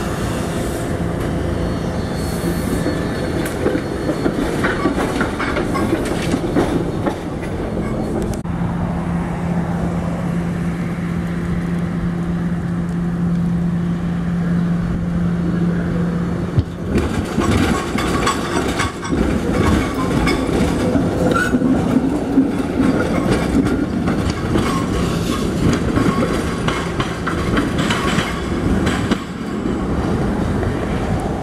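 SEPTA Kawasaki light-rail trolleys rolling on street track, with a steady low hum through the middle. From about 17 seconds in a trolley runs over the curved track and its wheels click repeatedly over the rail joints and switches.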